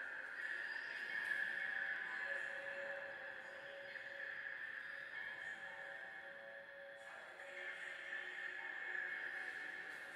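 Ambient background music made of sustained drone tones: a steady high tone throughout, joined by a lower held note from about two seconds in until about seven seconds.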